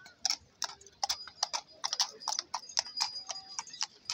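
Horse's hooves clip-clopping on stone paving as a horse-drawn carriage passes, about three or four hoof strikes a second.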